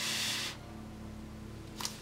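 A short rustle of hand handling noise lasting about half a second, then a faint steady low hum and a small click near the end.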